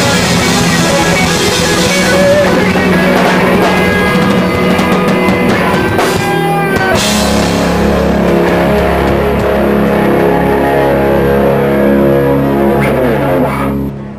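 Live rock band playing loudly with drum kit and electric guitars. About halfway through the band moves into a long held chord that rings on with scattered drum hits, then stops sharply at the end as the song closes.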